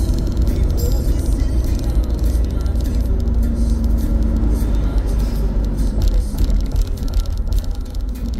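Steady low road rumble inside a car cruising at motorway speed, with music playing over it.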